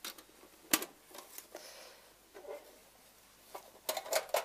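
Clicks and light knocks of a small box being handled on a table: one sharp click a little under a second in, then several softer taps and clicks.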